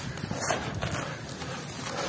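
Dry, coarse yellow grains trickling and crunching as hands scoop them up, let them fall back into a plastic tub and press into the pile, with a slightly louder rustle about half a second in.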